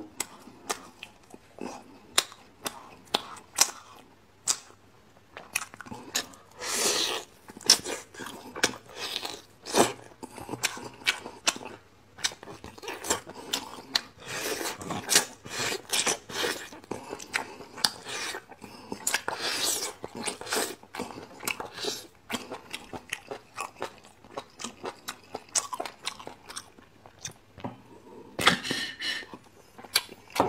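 Close-miked wet chewing and lip smacks of braised beef bone marrow, with several longer slurps as marrow is sucked out of the hollow bone segments.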